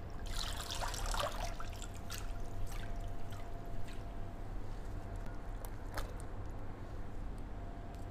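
Water draining from a metal mesh colander of soaked raw chicken pieces into an enamel basin: a short rush of pouring water in the first second or so, then scattered drips and small splashes as the colander is shaken.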